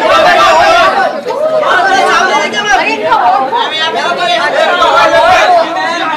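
Many voices talking and calling out at once, overlapping chatter of photographers and press on a red carpet.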